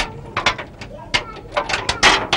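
A padlock and chain being handled on a metal door: a quick string of sharp metallic clinks and rattles, some with a short ring after them.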